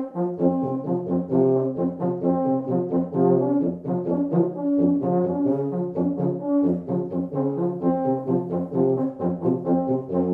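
Euphonium and tuba playing a duet: a quick, lively passage of short, detached notes, several a second, the tuba's low line under the euphonium's higher one.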